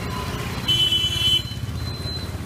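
A motor vehicle passing close with its engine running, and a horn sounding once, briefly, near the middle.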